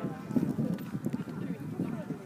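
Indistinct low talking near the microphone, over the hoofbeats of a horse cantering on the arena surface.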